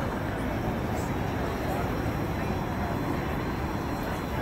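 Steady outdoor city background: low traffic rumble with the faint murmur of a large seated crowd.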